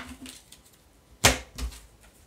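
Oracle cards being handled on a table: one short, sharp swish of a card about a second in, followed by a smaller one.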